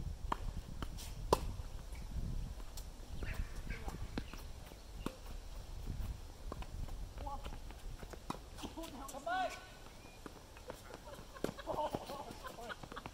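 Tennis ball struck by rackets and bouncing on a hard court during a doubles rally: a string of sharp pocks, the sharpest about a second in. Players' brief calls come in over the second half.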